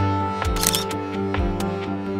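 Background music with held chords and deep drum beats about once a second, with a camera-shutter sound effect about half a second in.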